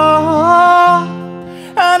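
Live male vocal with strummed acoustic guitar: a long held sung note that stops about a second in, leaving the guitar ringing and fading, before the singing comes back in near the end.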